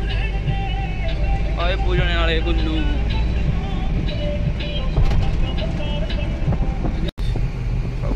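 Steady low rumble of a Mahindra Bolero pickup's engine and road noise heard inside the cab while driving, with music or singing playing over it. The sound cuts out for an instant about seven seconds in.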